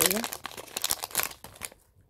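A small plastic jewellery pouch crinkling and rustling as a bracelet is pulled out of it by hand: a quick run of dense crackles that stops about a second and a half in.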